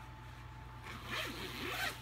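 Zipper of a fabric packing cube being pulled open, starting about a second in and growing louder.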